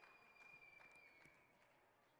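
Near silence, with a faint steady high tone that fades out about one and a half seconds in, and a few faint clicks.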